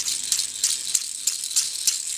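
Light, irregular rattling and clicking of small toy balls being stirred by hands in a plastic box as a small plastic toy is picked out.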